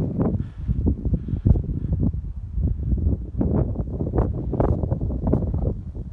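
Wind buffeting the microphone: a loud, uneven low rumble that swells and drops with the gusts.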